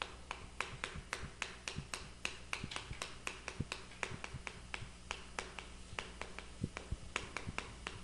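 Chalk writing on a chalkboard: a quick, irregular run of sharp taps and clicks, about five a second, as the chalk strokes out letters.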